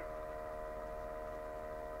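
A steady hum made of several held pitches, with no change through the pause.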